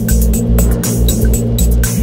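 Background music with a steady beat over sustained bass notes.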